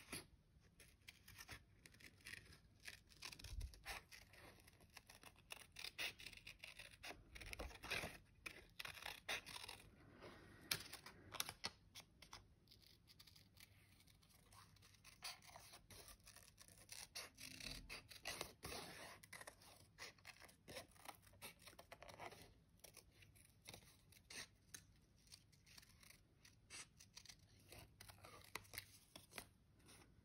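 Small scissors snipping through printed paper in a run of faint, irregular snips, cutting out a figure by hand.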